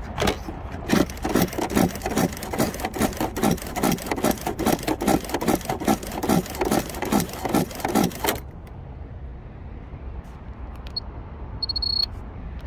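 Footsteps on asphalt with the rustle and jangle of a carried phone, about two to three steps a second, stopping about eight seconds in. A short high electronic beep sounds near the end.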